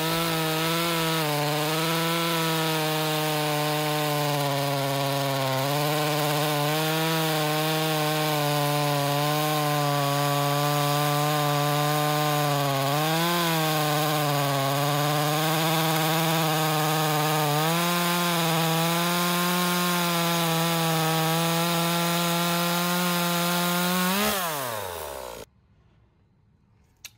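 Echo 2511T top-handle chainsaw's small two-stroke engine held at full throttle through a log with a full-chisel chain, its pitch sagging briefly several times under load, then winding down and cutting off near the end. The owner judges the chain speed too low.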